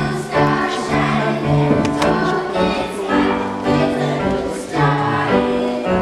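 A youth choir singing a sacred song in held notes, accompanied on a grand piano.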